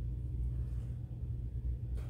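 A steady low background hum, with no distinct sounds over it.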